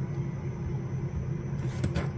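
Low, steady background rumble in a pause between speech, with a few faint short noises near the end.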